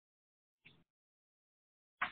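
Near silence, the recording gated to dead quiet, broken by one brief faint sound a little over half a second in.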